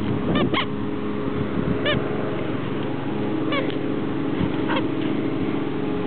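A dog whining eagerly in short, squeaky rising-and-falling whimpers, about five of them spread over the seconds, while it waits for its ball to be thrown.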